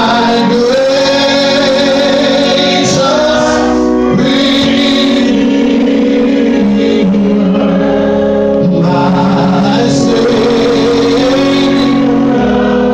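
Live gospel singing by a male lead voice, with long held notes that waver in pitch, over sustained accompaniment chords, loud through a sound system.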